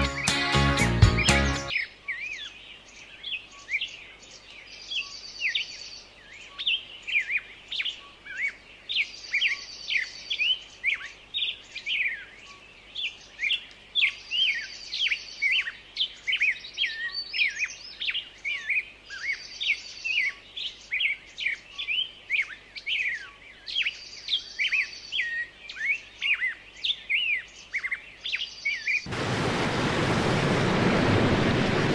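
Music cuts off about two seconds in and gives way to birds chirping busily, many short quick chirps, with a higher trilled phrase coming back about every five seconds. About a second before the end, a steady rushing noise sets in.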